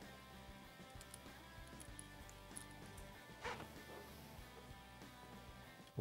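Faint background music with a guitar, otherwise near silence, with one brief soft sound about halfway through.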